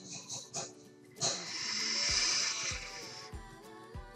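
A long breathy exhale of e-cigarette vapour, about two seconds, starting a little over a second in, over faint background music.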